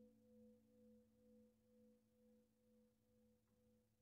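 Faint, fading ring of a vibraphone note left to sustain, its tone swelling and fading about twice a second from the motor-driven vibrato.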